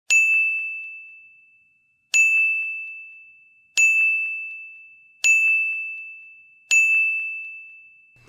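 An edited-in bell ding sound effect, one ding for each comment that pops up on screen. It plays five times, roughly every one and a half seconds, and each is one high ringing tone that fades away.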